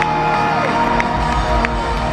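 Live rock band with drums, bass and electric guitar playing loudly, with a crowd cheering over it. A high held note slides down about half a second in.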